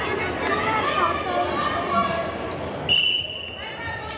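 A referee's whistle blown once, a short steady high blast about three seconds in, over people's voices in a large gym.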